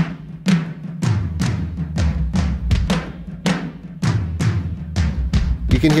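Recorded double-drummer tom part, roto toms and concert toms played together and pitched down with a harmonizer, heard as steady hits about two a second with extra strokes in between and a low, ringing tone on each.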